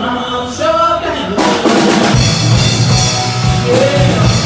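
Live rock band playing electric guitar, bass and keyboards. About a second and a half in the full band and drum kit come in harder, and a steady kick-drum beat follows.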